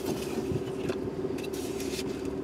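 Safari vehicle engine running steadily at low speed, a constant hum with a few faint ticks over it.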